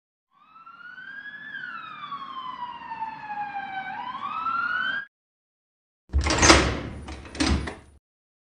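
Ambulance siren sound effect with a low vehicle rumble under it: one slow wail that rises, sinks over a couple of seconds and rises again, then cuts off suddenly about five seconds in. After a second's silence comes a loud door sound in two surges, the second near the end.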